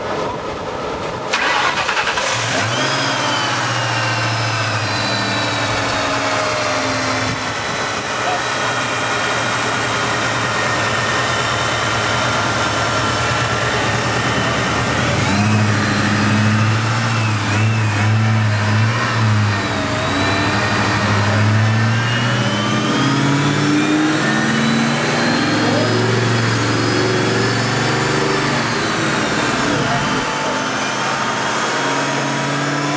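Ford Mustang Cobra's V8 engine starting about a second in, then running with the revs rising and falling.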